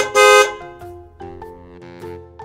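A cartoon car horn sounding two quick beeps at the very start, followed by light background music with held notes.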